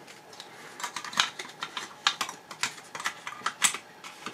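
Irregular light clicks and taps of a 120 roll spool being pushed and seated into the bottom of a Rolleiflex Old Standard's metal film chamber by hand, starting about a second in.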